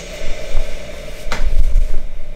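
Opening of a Brazilian funk music video played back: a steady held tone over a hiss, starting with a click, with a sharp tick a little over a second in.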